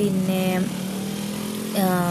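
Motorcycle engine running steadily at cruising speed, heard from the moving bike, with a person talking over it at the start and again near the end.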